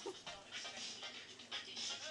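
Quick, breathy panting, roughly two breaths a second, with faint music behind it.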